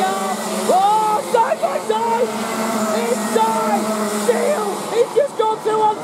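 Several Rotax 125 single-cylinder two-stroke kart engines racing together, their pitch climbing again and again as the karts accelerate out of corners, overlapping one another.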